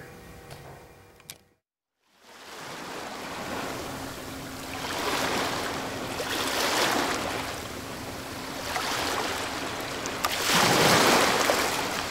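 Ocean surf: waves washing in and drawing back, swelling about every two seconds and loudest near the end. It fades in after a brief silence that follows faint room tone and a single click.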